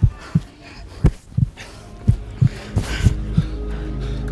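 Heartbeat sound effect: low, paired thumps about once a second. Sustained music tones come in beneath it over the second half.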